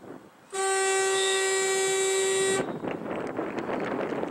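A horn sounding one loud, steady blast at a single pitch for about two seconds, starting about half a second in and cutting off sharply.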